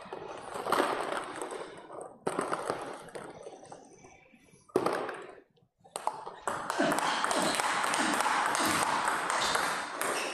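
Table tennis rally: a celluloid-style ping-pong ball clicking off rubber paddles and bouncing on the table. The clicks are interrupted by a couple of brief near-silent gaps in the middle, and a steady hiss sits under them in the last few seconds.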